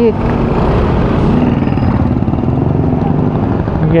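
Steady running noise of a Honda Click 125i single-cylinder scooter creeping through dense traffic, mixed with the engines of other motorcycles close around it.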